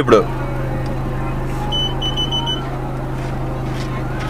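Car engine idling as a steady low hum heard inside the cabin, with a quick run of about five short, high electronic beeps near the middle.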